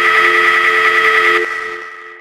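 Eerie electronic drone: several steady high tones layered over lower ones, with a warbling shimmer. It cuts off about one and a half seconds in and trails away in a fading echo.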